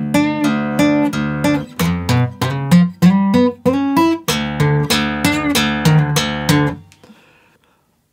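Taylor acoustic guitar fingerpicked: a melodic line of single notes over an open low E bass, with a few bent notes. It stops about seven seconds in and rings out to near silence.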